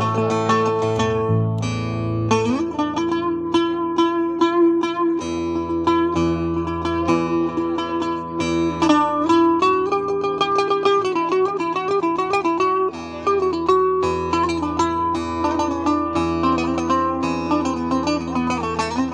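Live Cretan folk music on plucked lutes: a laouto plays steady chords while a melody line above it slides and bends between notes, without a break.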